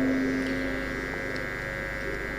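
Steady electrical mains hum with a buzz of many higher tones, and one low tone that fades out just after halfway.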